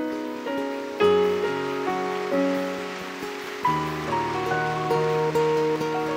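Soft, slow instrumental music from a live worship band: held keyboard chords that change about a second in and again just before four seconds.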